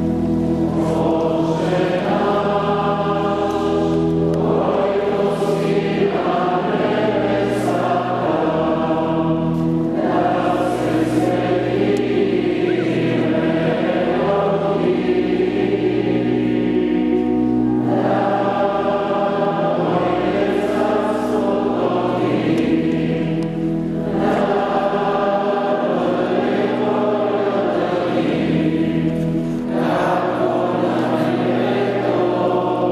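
A choir singing a slow liturgical chant in phrases over long-held low notes.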